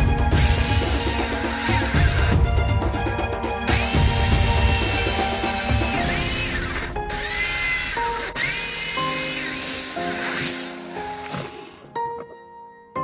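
Electric drill boring into a pool ball clamped in a vise, running in spells that rise and fall in pitch, under background music.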